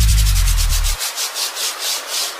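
Closing bars of a Sundanese DJ slow bass remix: a deep held bass note cuts out about a second in, leaving only rhythmic swishes of noise, about four a second.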